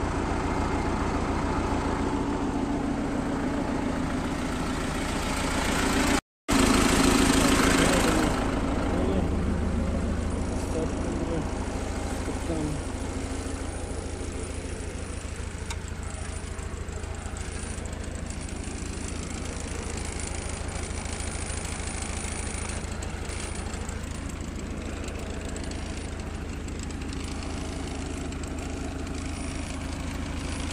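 Tractor diesel engine running steadily. The sound cuts out completely for a moment about six seconds in, comes back louder for a couple of seconds, then runs on a little quieter.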